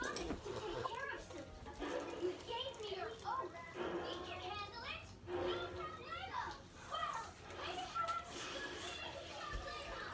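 Indistinct children's voices talking in the background, too faint for words to be made out.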